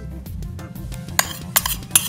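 A metal spoon clinks sharply several times against a small dish and a mixing bowl as melted butter is scraped out. The clinks begin a little past one second in, over background music.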